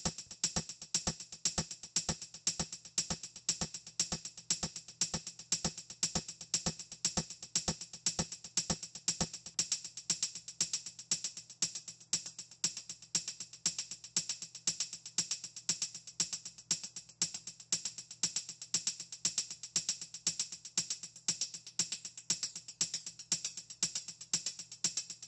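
A soloed shaker loop playing a quick, even rhythm of bright, high shakes, each trailed by faint echoes from a double-time delay effect with little feedback.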